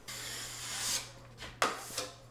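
A hand tool rubbing and scraping over a drywall wall. There is one hissing stroke about a second long that grows louder and stops abruptly, then a sudden, louder scrape near the end.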